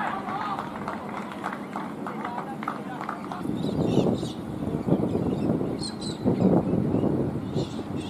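Scattered voices of players and onlookers around an outdoor cricket ground between deliveries, with low muffled rumbles in the middle.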